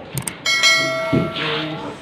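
Subscribe-button sound effect: a quick mouse click, then a bright notification-bell chime that starts suddenly about half a second in and fades out over about a second, with voices underneath.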